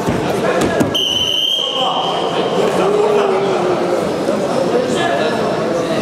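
Wrestlers' bodies thudding onto the mat in the first second. A referee's whistle then sounds once, a steady shrill note lasting about a second, as the action is stopped. Voices in the hall run underneath.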